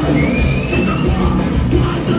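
A rock band playing loud and live with distorted guitars, bass and drums, heard from within the audience. In the first second, one high note slides slowly upward over the dense low rumble of the band.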